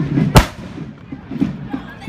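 A single sharp, loud bang a little under half a second in, with a short ringing tail: a black-powder musket firing a blank salvo.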